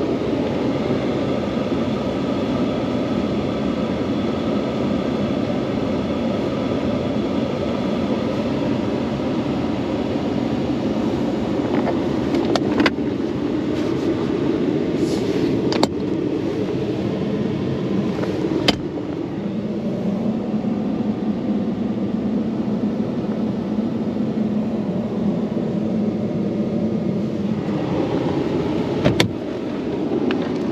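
Ram 1500 Classic pickup's engine idling steadily, heard from inside the cab. Four sharp clicks come through it as the center console lid and compartments are opened and shut.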